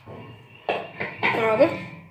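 Speech: a voice talking, starting about two-thirds of a second in, after a faint stretch of low noise.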